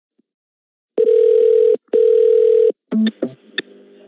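Telephone ringing tone of an outgoing call: two long steady tones with a short break between them. This is followed by clicks and line noise as the call is picked up near the end.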